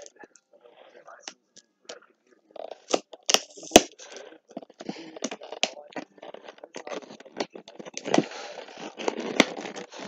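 Toy figure packaging being torn open and crinkled: after a quiet start, a run of crackling rustle with scattered clicks, two sharp snaps about three and a half seconds in, continuing to the end.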